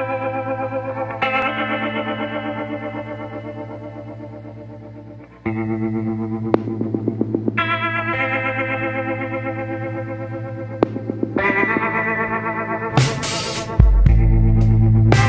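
Background music: sustained, effects-heavy chords over a steady low drone, with a new chord entering every few seconds, a brief rapid pulsing in the middle and a sharp hit near the end.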